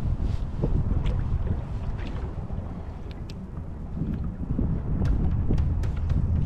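Wind buffeting the microphone with a low, uneven rumble, over water lapping against a small boat's hull, with a few light clicks.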